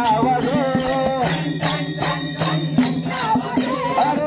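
Group of voices singing a devotional bhajan, with small hand cymbals (taal) struck in a steady beat about two and a half times a second over a steady low held note.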